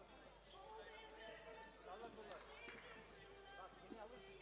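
Faint background voices of people talking in a large sports hall, with no clear words.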